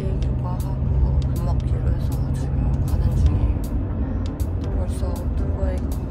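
Steady low rumble of a moving car heard from inside its cabin, under a woman's voice; a low hum in the rumble shifts down a little about halfway through.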